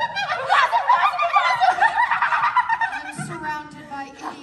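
Several young performers playing hyenas laughing together in high, rapid, bouncing laughs that die down in the last second.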